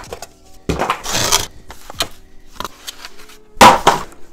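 Cardboard being handled: a hand scrapes and rustles the cardboard insert of a laptop box about a second in, with a sharp tap near the middle. Near the end comes a louder, short cardboard whoosh-and-thud as the box lid is shut. Faint background music plays underneath.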